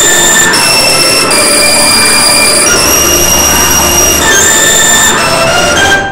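Sampled Steinway D-274 piano soundfont playing a black MIDI at about 150,000 notes per second, so dense that it merges into a loud, noise-like wall of sound. Sustained high chord tones shift every half second or so above the wash.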